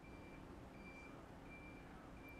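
Faint backup alarm of a reversing vehicle, a single high-pitched beep repeating evenly about every three-quarters of a second, over a low background rumble.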